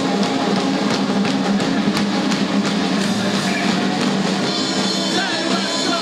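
Live pop-punk band playing loud: electric guitar and a drum kit with frequent cymbal and drum hits, and voices singing near the end.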